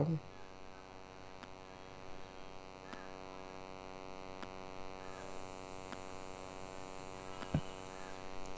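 Steady electrical mains hum under faint, scattered clicks of steel gears and shafts being handled in an aluminium motorcycle crankcase. One sharper knock comes near the end.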